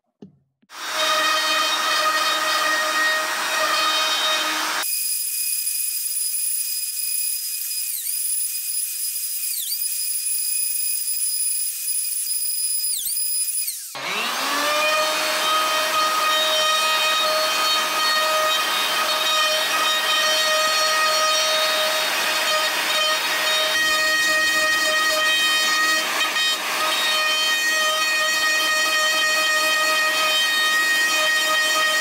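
Bosch plunge router running with a steady high whine of several tones, its bit cutting out damaged particle board. Its pitch sags briefly a few times, and about fourteen seconds in the motor winds back up to speed and runs on steadily.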